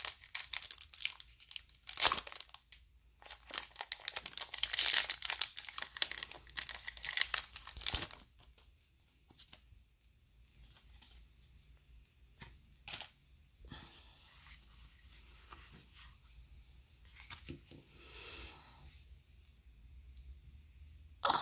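A foil Pokémon TCG booster pack wrapper being torn open and crinkled for about the first eight seconds. After that come much quieter rustling and a few light clicks.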